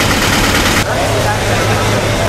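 Busy outdoor market ambience: a vehicle engine running steadily with a low hum under a loud wash of noise, with faint distant voices.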